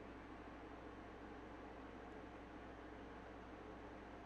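Near silence: a faint steady static-like hiss with a low hum, which the streamer takes to be her air conditioner.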